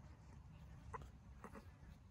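Near silence outdoors: a low steady rumble with two or three faint, brief animal calls, about a second in and again a little later.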